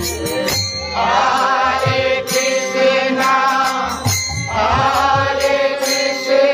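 Devotional kirtan: voices chanting a mantra in two long sung phrases, the first starting about a second in and the second near the end, over a harmonium. Percussion keeps a steady beat underneath.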